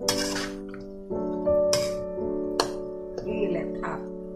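A metal spatula scrapes and clinks against a wok during stir-frying: one long scrape at the start, then three short strokes. Steady piano-like keyboard music with sustained chords plays under it.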